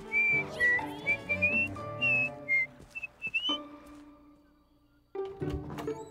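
A cartoon bear cub whistling a short tune of clear, separate notes over soft background music. The whistling stops about three and a half seconds in, and the music fades almost to silence before coming back in near the end.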